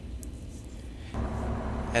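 Komatsu Dash 5 excavator's diesel engine running; about a second in, its sound steps up, louder with more low rumble.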